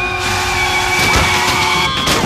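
A car driving fast toward the listener, its engine and tyre noise loud and building slightly, over a held dramatic music chord.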